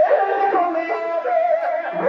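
A voice singing a melody with musical accompaniment; a long held note breaks off at the start and a new sung phrase follows.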